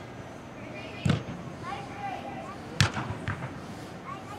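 Soccer ball kicked on indoor turf: two sharp thumps about a second and a half apart, with a lighter knock soon after the second.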